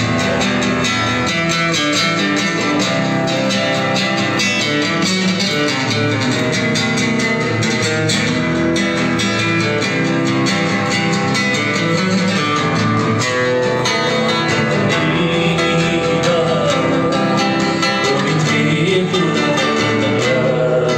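Acoustic guitar being played live, amplified through a microphone and PA speaker, with a man's singing voice.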